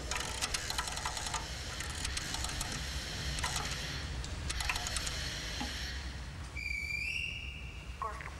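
A telephone being handled and dialled: scattered clicks over a low steady rumble, then one high electronic tone about a second long near the end.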